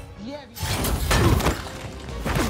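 Action-film fight sound effects: a short grunt, then about half a second in a crash with shattering debris, over film score music.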